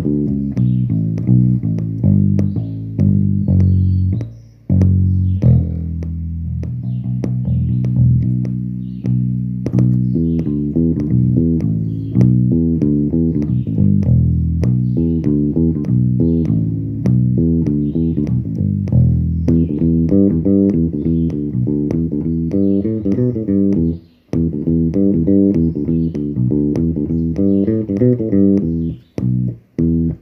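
Electric bass guitar played as a melodic instrumental line of plucked notes. It breaks briefly about four seconds in and again near twenty-four seconds.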